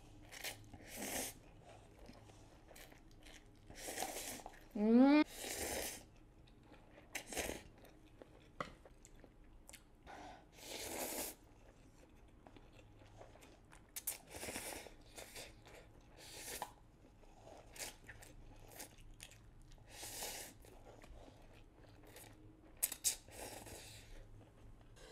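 Close-miked mukbang eating sounds: a person slurping spicy instant noodles from a cup and chewing, in short slurps and mouth sounds every second or two. About five seconds in, a brief rising squeaky sound is the loudest moment.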